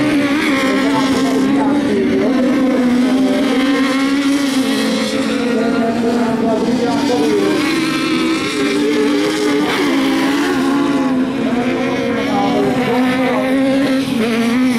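Several 2000cc sprint-class autocross buggy engines racing at high revs, their pitch repeatedly rising and falling as the drivers accelerate, shift and lift off.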